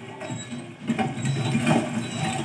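Wheels of a small wagon loaded with food clicking and rattling as it rolls, irregular and busier from about a second in, over a low hum. It is a film soundtrack heard through a TV speaker.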